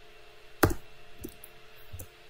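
Laptop keyboard keystrokes: three separate key clicks, the first and loudest a little over half a second in, over a faint steady hum.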